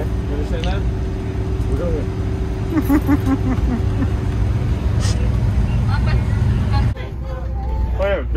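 School bus running along the road, heard from inside the cabin: a steady low engine and road drone.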